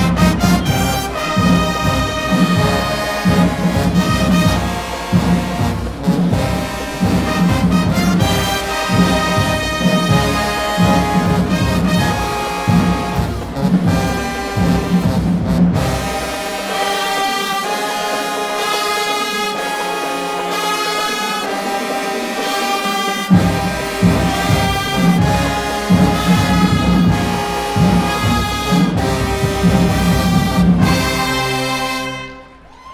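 High school marching band playing, brass over a steady drum beat. About halfway through, the drums and low brass drop out for several seconds while the horns hold chords. Then the full band comes back in with a loud hit.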